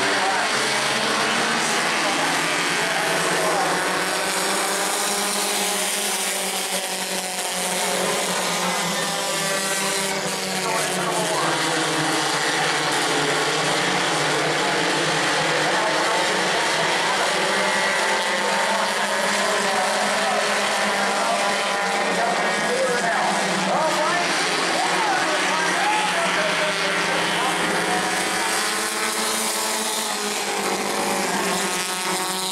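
A pack of Bomber-class stock cars racing around an asphalt oval, several engines running together, their pitch rising and falling as the cars pass.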